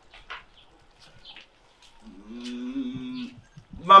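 A single long, level, moo-like vocal sound held at one pitch for over a second, starting about two seconds in, with a few faint clicks before it.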